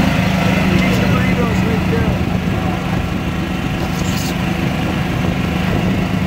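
Motor of a small open, canopied cart running steadily as it drives along, a constant hum.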